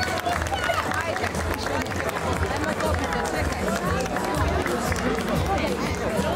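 Crowd chatter: many voices talking over one another, with music playing underneath.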